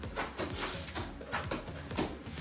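Soccer ball being touched with the feet during an around-the-world trick: a few soft knocks and scuffs on the ball and the artificial turf.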